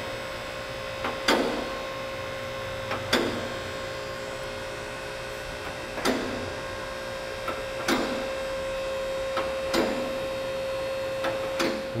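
Mahovi two-post car lift running steadily with a hum as it raises the car body. A sharp click comes every couple of seconds as the arms climb past the safety locks.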